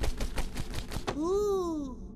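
Cartoon running-footstep sound effect: a quick patter of light taps, about ten a second, as the animated chick scurries off. About a second in it gives way to a short cartoon vocal cry from the chick that rises and then falls in pitch.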